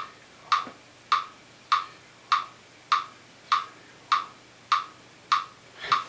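Metronome ticking steadily at 100 beats per minute: about ten evenly spaced clicks, each one short and sharp.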